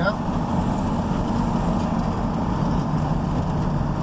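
Steady engine hum and low tyre rumble from inside a vehicle driving on a gravel road.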